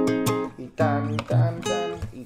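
Nylon-string classical guitar played fingerstyle: chords plucked with several fingers at once, a few strokes each left to ring and fade.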